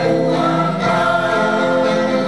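Mixed choir of men's and women's voices singing together in harmony, holding long sustained notes.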